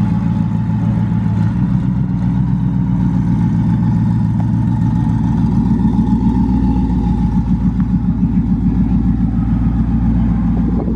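Twin-turbocharged 2019 Ford Mustang GT's 5.0 Coyote V8, through a Corsa Xtreme catback exhaust, idling steadily as the car creeps along at low speed, with a rhythmic exhaust pulse.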